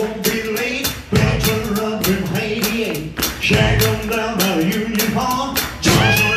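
Live rock and roll band (electric guitar, bass, drums, keyboards and saxophone) playing an up-tempo song with a male singer, the drums keeping a steady driving beat.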